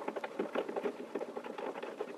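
A Matrix Armory wall-mount hook being screwed by hand onto its threaded mounting post: a quick, irregular run of small clicks and scrapes as the parts turn against each other.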